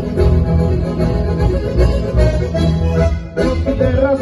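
Three button accordions with acoustic guitar playing a Sardinian passu 'e tres dance tune, with a short break in the playing a little past three seconds in before the tune picks up again.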